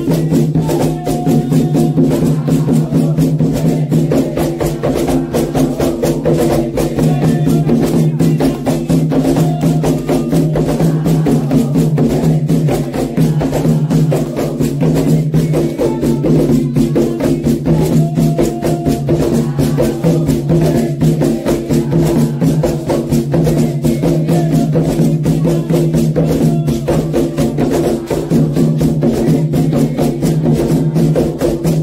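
Candomblé ritual music: large hand drums and hand clapping keep a steady, dense rhythm, with voices singing over it.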